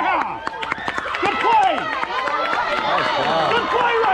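A group of girls' voices chanting and shouting a softball team cheer together, several voices overlapping with some drawn-out, sung notes.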